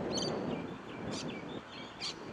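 A bird chirping: short, high calls about three times, over steady open-air background noise.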